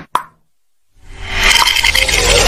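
Animated intro sound effects: a short pop just after the start, a moment of silence, then a whoosh that swells up about a second in into a loud, bright effect with a musical edge.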